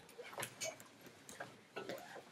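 Scattered light clicks and rustles of handling close to the microphone, a few irregular ticks with the room quiet between them.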